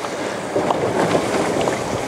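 Steady rush of water and wind around a small boat moving slowly through choppy water, with no distinct engine note.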